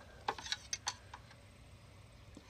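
A few light plastic clicks in the first second as the dipstick cap is twisted loose and drawn out of the oil fill tube of a Briggs & Stratton lawn mower engine to check the oil.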